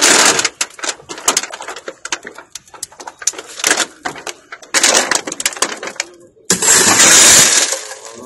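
Light clinks and taps of a handcuff chain and small hard pieces, then near the end a sudden loud crash of a car's window glass breaking, lasting about a second.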